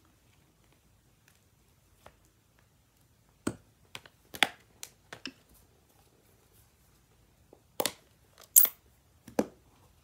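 Short clicks, taps and plastic knocks from hands handling rubber-stamping supplies: a cling rubber stamp, a clear acrylic block and a plastic ink-pad case. They come in a cluster a few seconds in and again near the end, with the sharpest knock shortly before the end.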